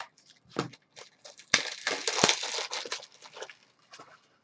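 Crinkling and crackling of plastic packaging being handled, one dense burst lasting about a second and a half in the middle, with a few short handling clicks around it.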